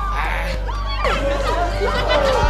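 Several people's voices overlapping, with music under them and a steady low hum.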